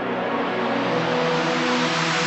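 Logo-intro sound design: held synthesizer tones under a rising whoosh that swells and brightens from about a second in.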